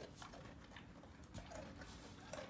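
Near silence with a few faint, scattered soft clicks from a dog eating a dog biscuit and moving at a bench.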